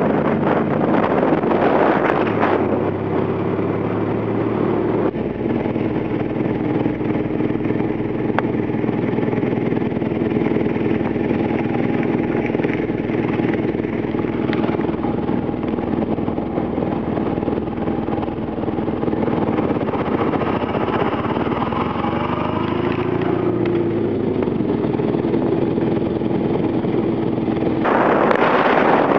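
Polski Fiat 126p's small air-cooled two-cylinder engine running under way. Its note is steady, shifting about two seconds in and rising and falling again near the end as the car changes speed.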